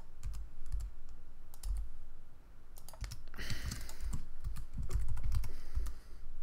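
Single computer-keyboard keys tapped at irregular intervals, short separate clicks with dull low thuds: one-key shortcuts rather than running typing. A brief rustle comes about three and a half seconds in.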